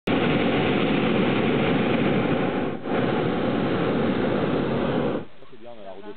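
Hot air balloon's propane burner firing: a loud, steady rushing blast with a brief dip near the middle, shut off suddenly about five seconds in.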